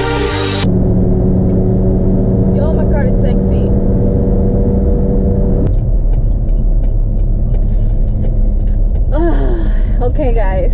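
Car engine drone and road rumble heard inside the cabin while driving at speed, steady and low. Electronic music plays at the start and cuts off abruptly under a second in.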